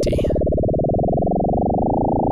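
Sine-wave tone from the Absynth 5 software synthesizer, frequency-modulated by a second sine wave whose rate is being turned up to around 20 Hz. The up-and-down pitch wobble is now so fast that it starts to blur into one buzzy tone, and its upper edge creeps higher.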